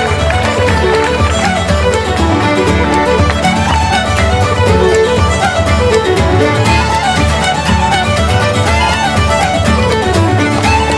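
Irish traditional tune played on fiddle with guitar accompaniment, a run of quick melody notes over a steady rhythm.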